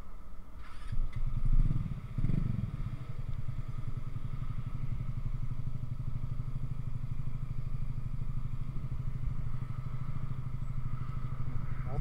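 Motorcycle engine starting up about a second or two in, with a brief rise, then settling into a steady idle.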